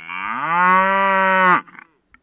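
A cow mooing once: one long call that rises in pitch at the start, holds steady for about a second, then cuts off suddenly.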